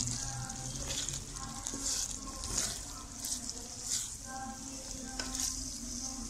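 Wooden spatula stirring a wet mix of minced meat, kachnar buds and chopped tomato in a hot karahi, with irregular scraping strokes over a steady sizzle from the cooking pan.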